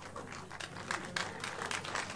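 Audience clapping: scattered claps that thicken into denser applause about a second in.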